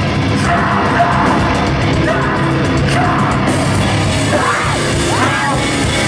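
A heavy hardcore band playing live and loud: distorted guitars and drums with shouted vocals. Steady cymbal hits in the first half stop about halfway through, and the shouted vocal comes to the fore after that.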